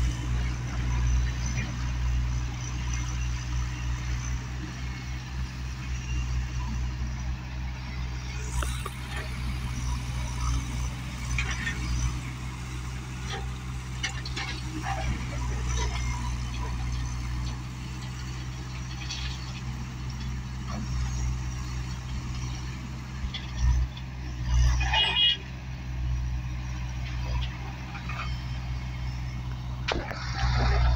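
Tata Hitachi backhoe loader's diesel engine running steadily with a low, pulsing rumble as it loads stone, with scattered knocks and clatter of stone. A louder burst of about a second and a half comes near the end.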